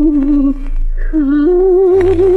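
An old Korean popular-song record from 1959, a 78 rpm disc, playing: one wavering melody line with strong vibrato holds a note, breaks off about halfway, then slides back in a little higher, over a steady low hum.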